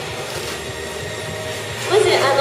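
Steady room noise of a hall, an even hiss-like background, with a woman's voice starting again right at the end.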